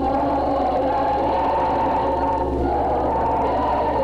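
Choir singing Russian Orthodox liturgical chant in long, sustained chords, over a steady low hum from the old recording.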